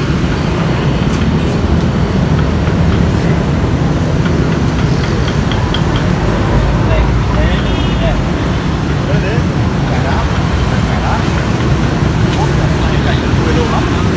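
Steady outdoor street noise: a continuous low rumble of road traffic with faint background voices.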